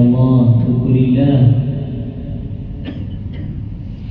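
Quranic recitation (tarteel) chanted in a deep, drawn-out voice for about the first second and a half, then a pause with a low steady hum and two faint clicks.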